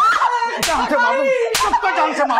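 Two hard slaps of a hand striking a person, about a second apart, over a woman's distressed crying and shouting.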